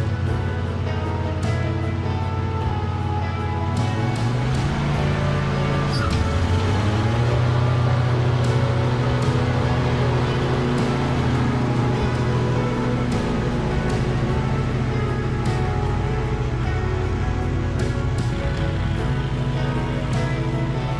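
Background music over the Husqvarna V548 stand-on mower's engine running, the engine rising in pitch a few seconds in as it is throttled up and driven off.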